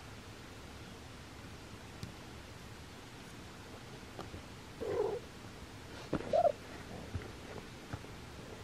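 Domestic cat purring steadily close by, with two brief louder sounds about five and six seconds in.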